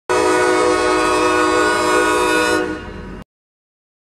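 Diesel locomotive air horn sounding one long blast of several chime notes together; it eases off near the end and then cuts off abruptly.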